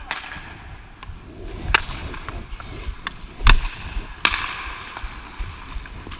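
Ice hockey play heard up close: four sharp cracks of sticks and puck on the ice, the loudest about three and a half seconds in, over the hiss of skate blades on ice, with a longer scraping hiss right after the last crack.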